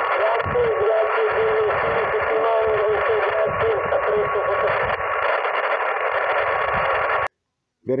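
Yaesu FT-817 transceiver's speaker on receive: a steady rush of narrow-band static with a faint, distant voice in it and a thin steady tone. It cuts off suddenly near the end as the microphone's push-to-talk is keyed.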